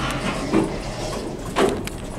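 Elevator doors sliding, with two short rushes of noise about half a second in and near the end.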